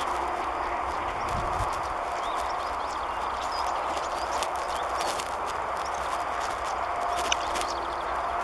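European stonechat calling: a scatter of hard, sharp clicking 'tchak' notes and a few short thin whistles, over a steady background rush.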